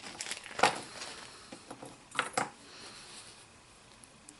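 Light clicks and taps of small metal fly-tying tools being handled as a whip-finish tool is picked up: a quick cluster in the first half-second and two sharper clicks a little after two seconds.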